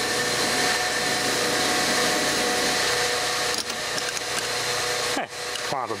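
Steady hiss with a few faint, steady whines over it from a Sharp Twincam boombox speaker, cutting off suddenly about five seconds in.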